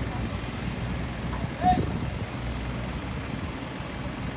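A dump truck's engine running with a steady low rumble, with voices in the background and a brief call about halfway through.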